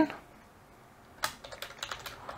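Typing on a computer keyboard: after a near-quiet pause, a quick run of key clicks starts a little over a second in.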